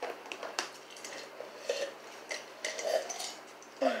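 Scattered light clicks, knocks and clinks of a drinking mug, dishes and a plastic water bottle being handled at a table.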